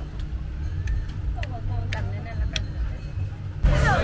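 Outdoor street ambience: a steady low rumble of road traffic with faint voices and a few light clicks. Louder sound comes in suddenly near the end.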